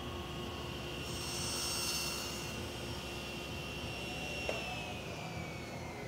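Table saw running with a steady whine, cutting through a piece of wood on a sled about one to three seconds in. About four and a half seconds in there is a click, and then the blade's pitch falls steadily as it spins down.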